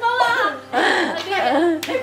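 Excited voices calling out during a guessing game, with a single sharp clap near the end.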